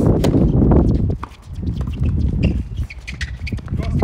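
Tennis racket strikes and shoe scuffs on a hard court during a doubles point: a sharp serve hit about a quarter second in, then further hits and steps through the rally, all over a loud, steady low rumble.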